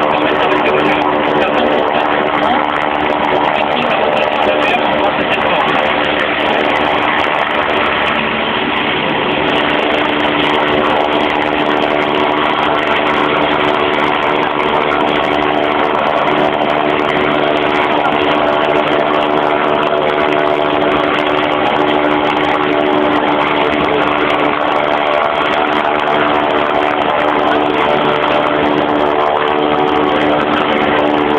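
Sécurité Civile Eurocopter EC145 rescue helicopter hovering, its turbines and rotor running steadily with a constant hum.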